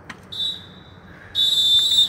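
Referee's whistle blown twice: a short toot, then a longer, louder blast near the end.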